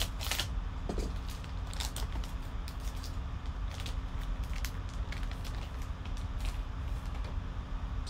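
Foil card-pack wrapper crinkling and tearing as it is pulled open by hand, with scattered short crackles, over a steady low hum.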